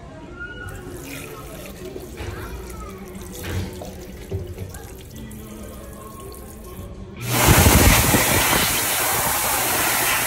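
Dyson Airblade tap at a washbasin: water runs faintly at first. About seven seconds in, the hand-dryer arms switch on with a sudden loud, steady rush of air that keeps going.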